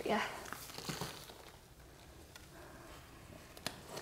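Faint rustling and crinkling of soil and palm fronds as a cat palm's root ball is lowered into a plastic pot of potting mix, mostly in the first second. A couple of light clicks come near the end.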